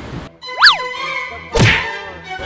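Comedy edit sound effects over background music: a quick slide-whistle-like boing that glides up and back down about half a second in, then a falling swoop that ends in a thunk about a second and a half in.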